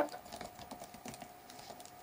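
Computer keyboard being typed on: a quick run of faint key clicks as a word is typed out.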